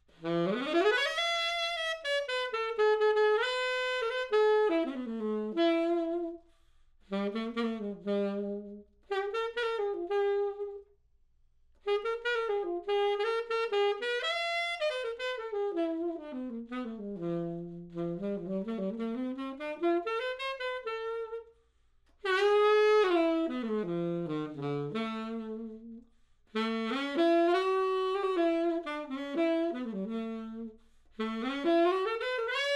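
Yamaha YAS-82ZA alto saxophone in amber lacquer played solo and unaccompanied: single-note phrases that open with a rising scoop and sweep up and down the range, dipping to the low register about 18 seconds in. The phrases are broken by short pauses for breath.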